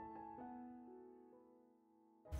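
Soft background piano music: a couple of held notes that fade away, leaving near silence from about a second in.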